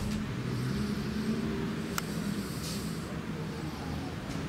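Road traffic: a car engine running nearby in a steady low rumble, with one sharp click about halfway through.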